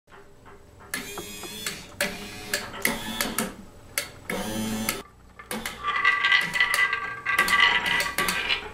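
A rolling-ball kinetic sculpture running: balls roll along its curved wire tracks with a ringing, humming sound, broken by sharp metallic clicks and knocks. About halfway through the ringing turns steadier and louder.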